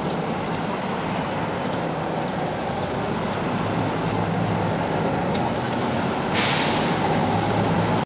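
Street traffic noise: vehicles passing and a steady engine hum. A sudden, louder hiss sets in about six and a half seconds in.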